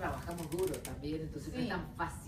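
People talking, with a short run of light clicks about half a second in.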